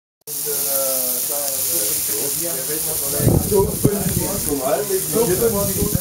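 Sausages and pork steaks sizzling on a grill, a steady hiss that cuts in abruptly about a quarter second in, with a couple of sharp clicks around the middle.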